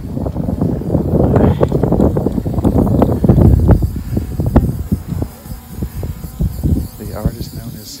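Wind buffeting the microphone with a loud, uneven rumble, mixed with indistinct voices. Near the end comes a short hiss from an aerosol spray-paint can.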